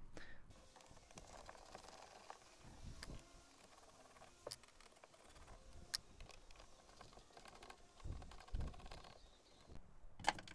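Quiet handling sounds of a screwdriver working the T25 Torx screws above a car's instrument cluster, with a few sharp clicks about three, four and a half, and six seconds in, and some low thuds near the end.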